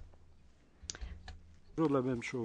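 A few faint clicks over a low, steady hum in a quiet room, then a voice starts speaking near the end.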